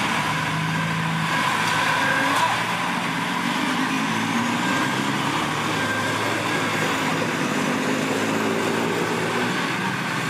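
Diesel engine of a small Komatsu D20A crawler bulldozer running steadily as the machine reverses across loose dirt.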